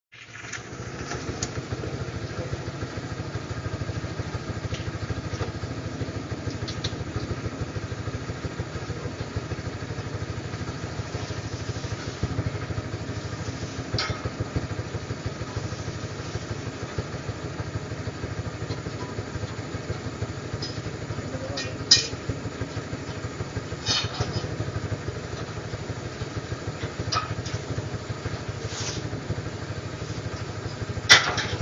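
A motorcycle engine idling steadily, with a few sharp clicks or knocks over it; the loudest comes about two thirds of the way through.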